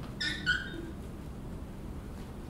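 Two short, high squeaks in quick succession, the second louder.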